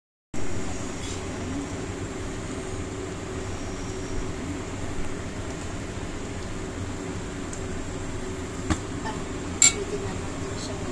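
Thick chocolate rice porridge (champorado) boiling in a pot, its bubbles plopping over a steady low rumble. Near the end, two sharp clicks about a second apart.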